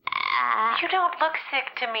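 A voice making wordless vocal sounds, its pitch sliding up and down in short broken bursts.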